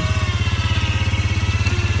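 400 four-wheel-drive ATV engine running steadily with a rapid, even beat.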